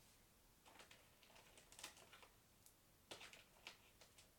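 Near silence with faint, scattered clicks and taps of small objects being handled out of sight, as someone rummages for a glue stick. A quick cluster of clicks comes about two seconds in, and a louder run of them just after three seconds.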